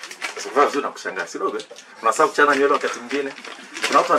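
A man speaking in a small room; speech only.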